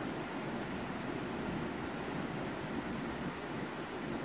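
Steady, even background hiss of room noise, with no distinct knocks or voices.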